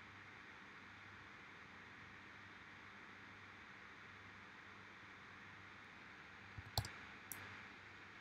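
Near silence with a faint steady hiss, then three quick sharp computer mouse clicks near the end.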